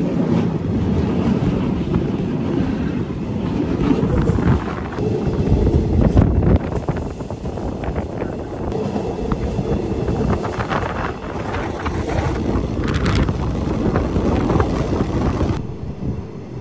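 Wind buffeting the microphone over the rumble of a passenger train running, recorded from an open window, with a few clatters of wheels on the rails.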